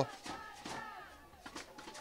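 A lull in the commentary: faint, distant voices over low field ambience.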